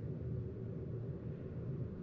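Steady low background rumble, like room noise, with no distinct sound standing out.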